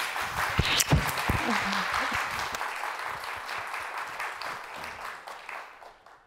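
Studio audience applauding steadily, then fading out over the last second or two.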